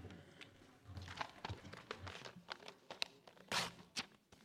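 Faint room sound of a quiet assembly chamber, with scattered small clicks and soft rustling and a louder rustle about three and a half seconds in.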